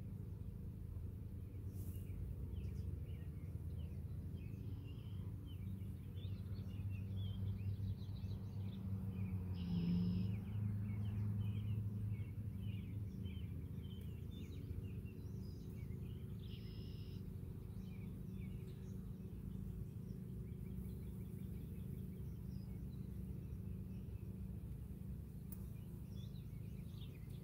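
Low, steady hum of honeybees from an opened hive body full of bees, swelling a little about ten seconds in, with small birds chirping throughout.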